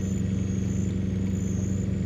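A large engine running steadily at idle, a constant low hum with a fine regular pulse and no change in speed. A thin high tone comes and goes faintly above it.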